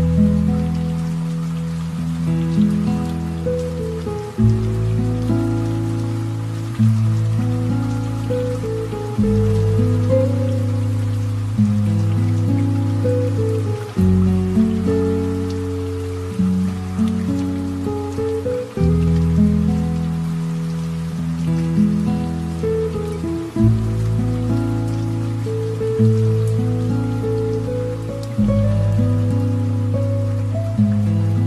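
Slow, relaxing piano music: a new chord struck about every two and a half seconds and left to ring and fade. A soft patter of light rain runs underneath.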